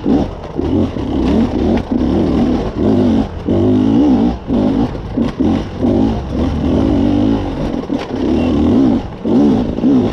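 Beta enduro motorcycle engine ridden over rock, revving up and down in repeated short bursts of throttle, about one to two swells a second.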